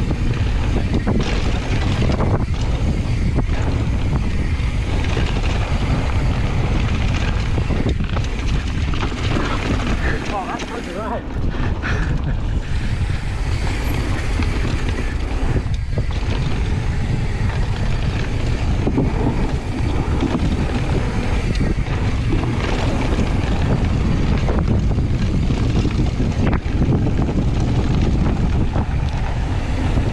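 Steady wind noise buffeting an action camera's microphone over the rumble of a mountain bike rolling fast down a dirt trail, easing briefly about ten seconds in.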